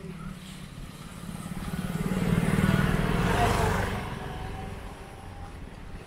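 A motorcycle passing close by. Its engine grows louder to a peak in the middle, then fades away over a second or so.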